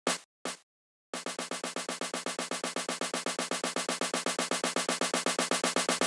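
Sampled snare drum in a software sampler playing an even sixteenth-note pattern, about eight hits a second, each hit louder than the last: a velocity-ramped snare roll building up. Two brief sounds come just before it starts.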